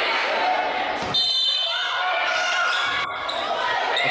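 Gym sound from a volleyball match recording: the ball being struck during a rally, with voices echoing in a large hall.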